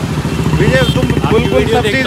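A vehicle engine idling close by in street traffic, a steady low pulsing rumble, with a man's voice talking over it from about half a second in.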